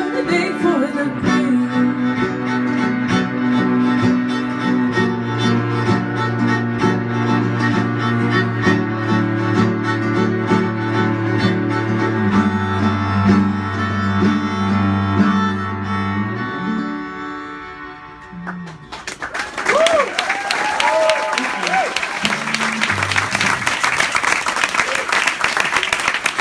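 Cello and viola hold long bowed notes over plucked banjo as a folk song ends; the music fades out about two-thirds of the way in. About 19 s in, audience applause breaks out with whoops and cheers and carries on to the end.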